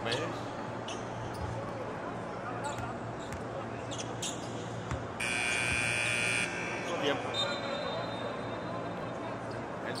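Arena buzzer sounding once for about a second and a half near the middle, signalling a substitution. Around it, the hall's background noise and a few ball bounces on the hardwood.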